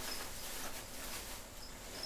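Rustling and crinkling of shredded-paper packing being rummaged through by hand, with a faint, high cricket chirp coming and going near the end.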